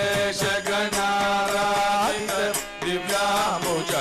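Male voices singing a Carnatic devotional bhajan in long held notes that slide between pitches, accompanied by mridangam drum strokes.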